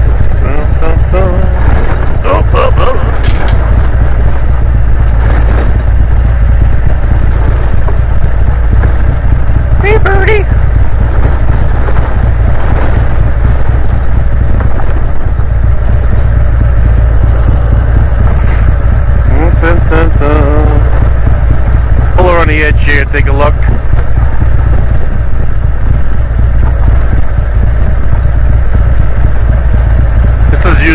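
Heavy, steady wind and road rumble on a helmet-mounted microphone as a Harley-Davidson touring motorcycle rides down a gravel road. The rider's voice comes through briefly a few times, without clear words.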